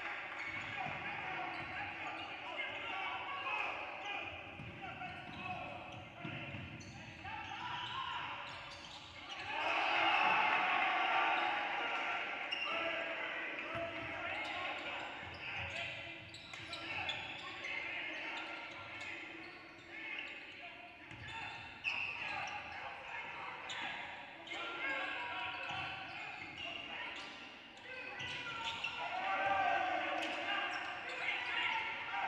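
Game sounds in a large gym: a basketball being dribbled on a hardwood floor among indistinct calls from players and spectators. The voices swell louder about ten seconds in.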